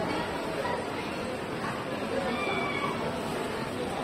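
Outdoor street ambience: a steady wash of noise with indistinct voices of passers-by and a few short high-pitched sounds.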